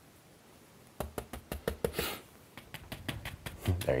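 Near silence for about a second, then a quick, irregular run of light taps and clicks with a short scrape, from oil-painting brush work: a brush picking up paint and dabbing highlights onto the canvas.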